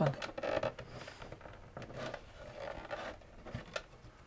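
Hands handling insulated wires and pressing crimped push-on spade terminals onto the tabs of a power supply's AC inlet and switch: faint rustling and scraping with a few small clicks.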